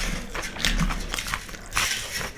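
Close-miked chewing of food with a run of crisp, irregular crunches, several a second.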